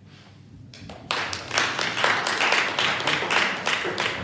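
Small audience applauding: many hands clapping in dense, overlapping claps that start about a second in.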